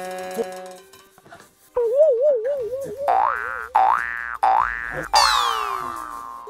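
Cartoon comedy sound effects: a wobbling boing, then three quick rising boings in a row, then a falling swoop near the end.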